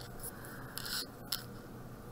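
Faint, short scrapes of a pencil on a paper worksheet, the clearest just before a second in, followed by one light tick.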